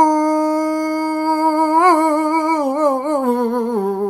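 A man singing unaccompanied, holding one long sung note that stays steady for about two seconds, then wavers up and down in a run and dips lower near the end.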